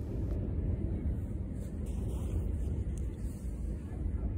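Steady low rumble of outdoor background noise, with no clear events.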